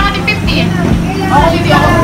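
Several people talking and chattering over one another, with a steady low hum underneath.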